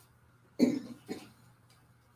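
A person coughs twice, two short coughs about half a second apart, over a faint steady room hum.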